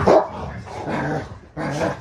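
Rottweilers play-growling and barking in a run of short bursts during rough play-wrestling, loudest just at the start.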